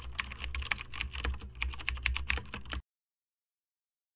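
Computer keyboard typing sound effect: a quick, irregular run of key clicks over a low hum, cutting off abruptly just under three seconds in.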